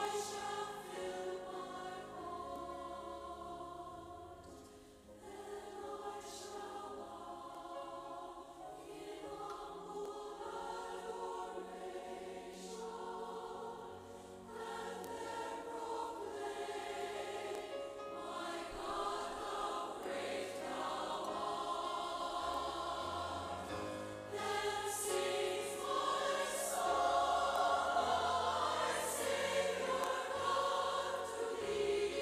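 Choral music: a choir singing, growing louder over the last several seconds.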